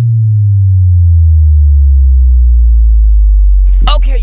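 A loud, deep synthesized tone sliding slowly downward in pitch: an edited-in transition sound effect. It holds until it cuts off suddenly just after a voice comes in near the end.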